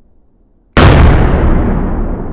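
One stick of Dyno Nobel dynamite detonating about three-quarters of a second in: a single sudden, very loud blast that dies away slowly, its hiss fading over the following seconds.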